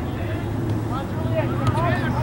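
Indistinct voices calling out in short shouts over a steady low background rumble.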